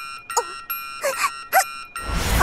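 Cartoon chime sound effect: a steady, high ringing tone with several overtones, with three brief voice-like sounds over it, about half a second, one second and one and a half seconds in.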